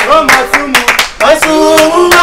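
A small group clapping their hands in rhythm while singing together.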